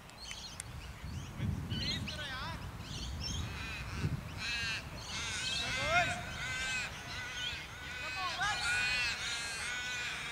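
Crows calling repeatedly from the trees: a string of drawn-out, arched caws from several birds that overlap and grow busier in the second half.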